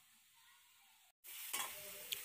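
Near silence, then suddenly about a second in, faint sizzling of pork pieces frying in a dry pan with no oil, rendering their own fat, with a metal spatula stirring them.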